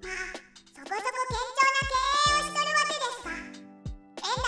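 Background music with low bass notes under a high-pitched narrating voice that holds one long drawn-out vowel for about two and a half seconds.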